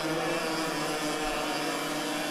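Several racing go-kart engines running, heard from trackside as a steady, even drone.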